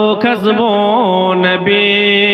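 A man singing a devotional Urdu naat in a slow, melismatic chant through a microphone. Sliding, ornamented notes give way near the end to one long held note.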